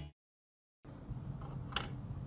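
Near silence: the last of a music track cuts off, a moment of dead silence follows, then faint room tone comes in with a single sharp click about three-quarters of the way through.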